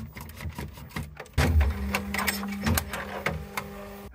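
Bambu Lab X1-Carbon 3D printer: a few clicks and knocks of handling inside the enclosure, then from about a second and a half in a steady motor hum as the toolhead moves across.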